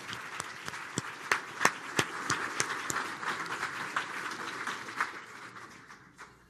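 Audience applauding: many hands clapping at once, dying away near the end.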